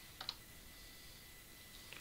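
Two faint computer keyboard keystrokes close together about a quarter second in, the entry being confirmed with the Enter key, then quiet room tone with one more faint click near the end.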